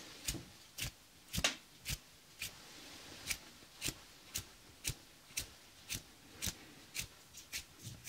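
Short, sharp hand sounds close to a binaural microphone, about two a second in a steady rhythm, coming a little faster near the end.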